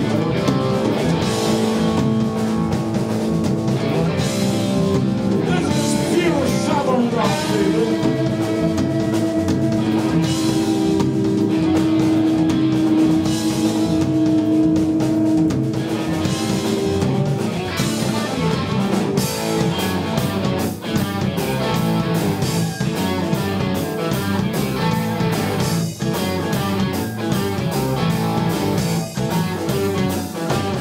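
Live southern rock band playing an instrumental passage: electric guitars over bass and drum kit. About six seconds in a guitar slides in pitch and then holds one long note for several seconds.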